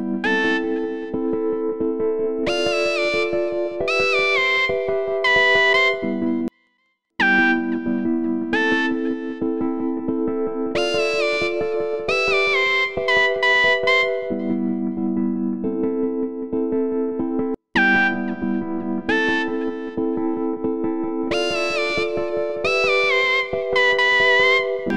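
A beat playing back in a music program: held synth chords with a distorted synth lead melody stepping up and down over them, from Arturia Analog Lab. Playback cuts out briefly twice and restarts.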